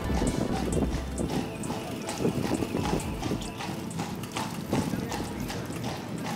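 A carriage horse's hooves clip-clopping on cobblestones in a regular beat, with music playing over them.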